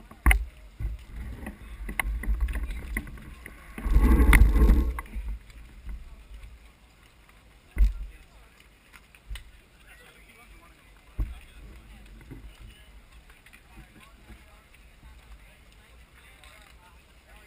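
Wind and handling noise on a bicycle-mounted camera as the bike is wheeled over brick paving: a low rumble throughout, a loud gust-like rush about four seconds in, and sharp knocks near the start, about eight seconds in and about eleven seconds in. Background voices of the crowd.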